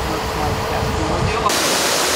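Concrete pump truck's diesel engine running as it pumps concrete up its boom: a steady low rumble with a faint hum. About one and a half seconds in it cuts off abruptly, giving way to a steady hiss.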